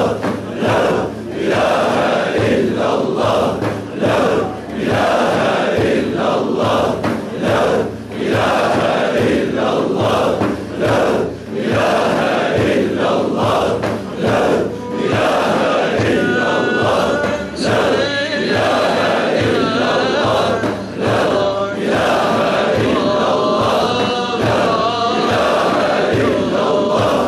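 Congregation chanting dhikr together, a repeated phrase in a steady pulsing rhythm. From about 16 seconds in, a higher held melody rises over the group chant.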